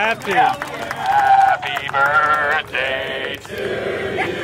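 Voices singing a run of held notes that waver in pitch, with short breaks between them.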